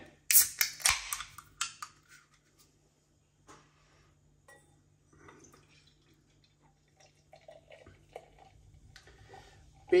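An aluminium beer can's ring pull cracked open, a cluster of sharp clicks in the first two seconds. After that comes a much quieter sound of stout being poured from the can into a glass, faint glugging and splashing as the head builds.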